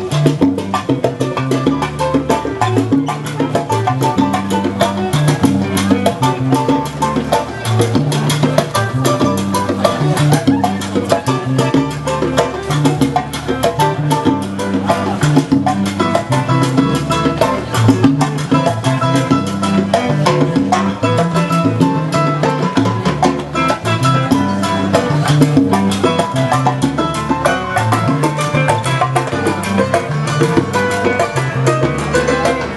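Salsa music with a steady beat and a repeating bass line under percussion.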